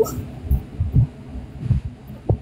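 Several soft, muffled low thumps about half a second apart, over faint background noise.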